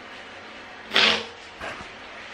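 A person blowing a blocked nose into a paper tissue: one short blow about a second in, then a fainter second one.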